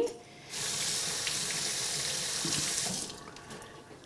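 Kitchen tap running water for about two and a half seconds while a split leek is rinsed clean of dirt, then shut off.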